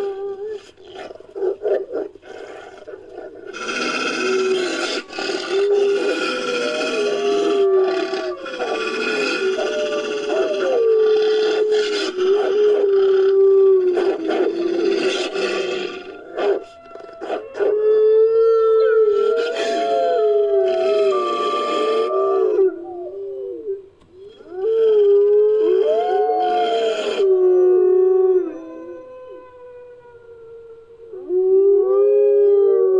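Long, wavering canine-style howls and whines made as a wolfdog sound effect. The held notes bend up and down, with a harsher, rougher layer over them for long stretches. The sound dips briefly about three-quarters of the way through and is quieter near the end.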